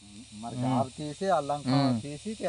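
A man speaking, over a faint steady hiss.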